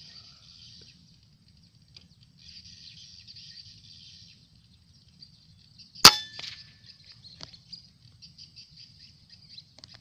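A single sharp rifle shot about six seconds in, with a brief ring after it and a smaller click a little over a second later. Insects buzz high and steady before the shot, and quick faint ticks follow it.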